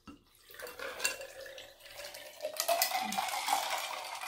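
Clear liquid poured from a glass bottle into a large glass full of ice cubes, splashing over the ice with scattered clinks of ice against glass, starting about half a second in.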